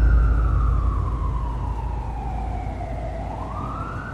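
Emergency-vehicle siren wailing over a deep, gradually fading city-traffic rumble. Its pitch slides slowly down for about three seconds, then rises again near the end.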